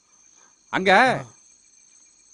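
A man's short spoken exclamation about three quarters of a second in, rising then falling in pitch, over a steady high-pitched chirring of insects.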